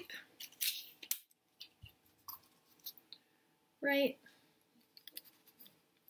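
Clear Scotch tape pulled off its roll and torn off, a few short crackling rips in the first second or so, followed by faint light handling sounds as the tape is pressed onto a paper cup and cardboard.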